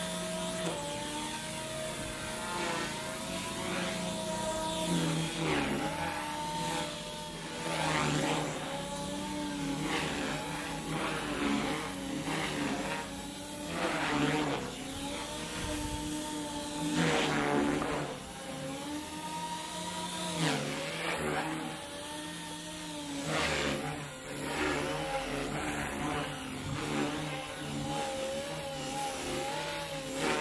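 Small electric RC helicopter's motor and rotor whine, rising and falling in pitch again and again as the throttle changes in flight.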